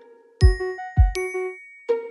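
Short musical logo jingle: bright ringing chime notes over two deep thumps about half a second apart, with a new plucked chord coming in near the end.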